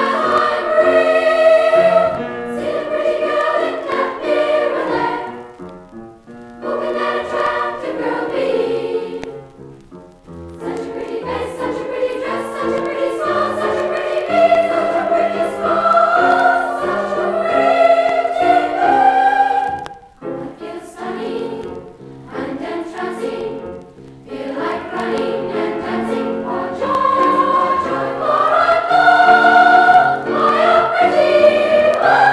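A school glee club choir singing in phrases, with brief pauses between them, played from a vintage vinyl LP.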